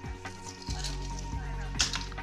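Background music with a few short kitchen clicks and clatters, the loudest near the end, over a faint steady hiss.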